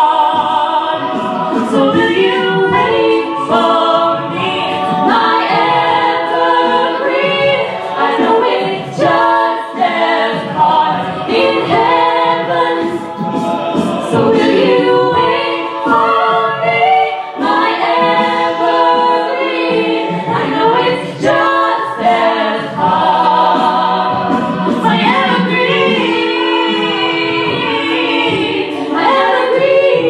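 A cappella vocal group singing, a lead voice over the group's sung backing harmonies, with short sharp clicks running through the song.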